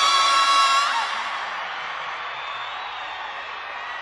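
The end of a Hindi film song: a loud, long-held high note stops about a second in, leaving a noisy wash that slowly fades away.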